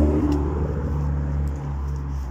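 A motor vehicle passing close by on the road: a low, steady engine hum, loudest at the start and gradually fading away.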